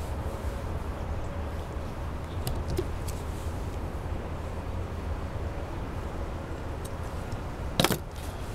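Steady low outdoor rumble with faint light ticks of string being handled, then a short sharp snip near the end as the kite string is cut with scissors.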